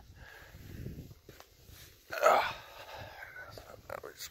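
A man's short groaned "ugh" about halfway through, over a faint low rumble, with a few light clicks.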